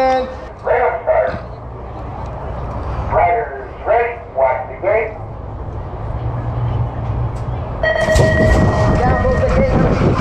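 BMX race start from the rider's helmet: short voice calls over the gate speaker, then about eight seconds in an electronic start tone sounds, the gate drops and the bike rolls down the start ramp in a rising rush of wind and tyre noise.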